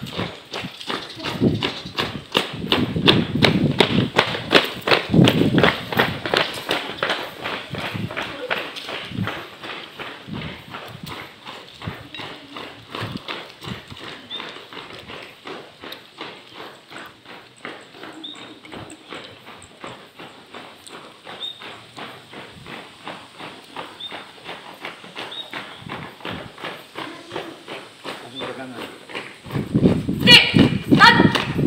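Footsteps of a group of people jogging on concrete, a quick, steady patter of many overlapping footfalls. They are loudest in the first few seconds as the runners pass close, then grow fainter as the group moves away.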